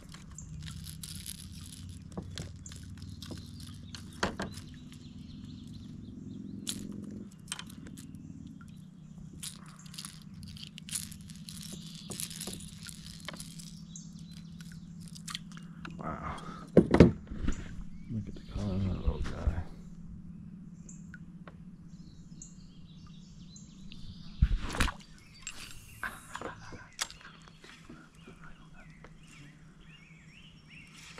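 Birds chirping over a steady low hum, with handling noises and a few sharp knocks on a plastic fishing kayak; the loudest knocks come a little past halfway.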